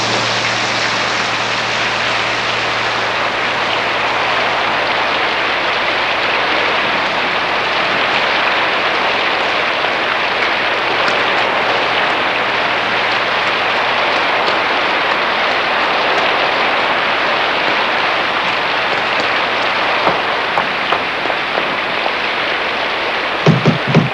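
Steady heavy rain pouring down, an even hiss throughout, with a low hum fading out over the first few seconds.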